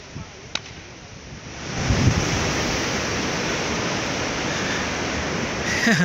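Rushing noise of beach surf and wind on the microphone, low at first, swelling up about two seconds in and then holding steady. A faint click comes about half a second in.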